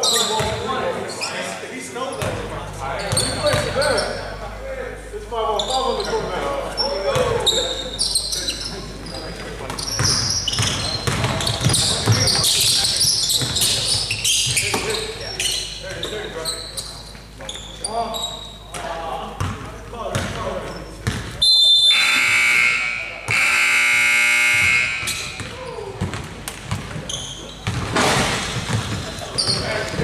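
Basketball game in an echoing gym: a ball bouncing, sharp knocks on the hardwood floor and players' shouts. About 22 s in, the scoreboard buzzer sounds twice, the second blast longer, about two seconds.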